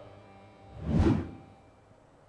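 A single whoosh sound effect for an on-screen graphic transition, swelling to a peak about a second in and then fading away.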